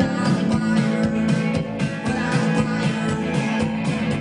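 Live rock band playing a song with electric guitar, bass guitar and drums, a steady beat running throughout.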